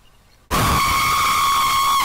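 Jump-scare screech sound effect: a sudden, very loud shrill noise with a steady pitch, bursting in about half a second in, held for about a second and a half, then cut off abruptly.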